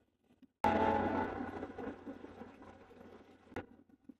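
A single sudden sound about half a second in that fades away over roughly three seconds, followed by a short click near the end.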